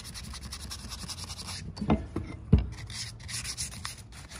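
220-grit sandpaper on a hand sanding block rubbing over a torch-charred wooden pickaroon handle in short, quick strokes, smoothing the char. A couple of brief knocks come around the middle, the second louder.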